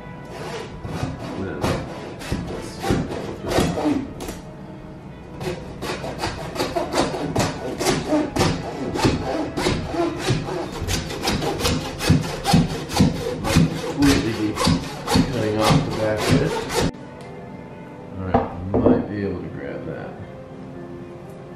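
Hand bone saw cutting through a lamb's skull in rasping back-and-forth strokes, slow and uneven at first, then a steady rhythm of about three strokes a second that stops near the end.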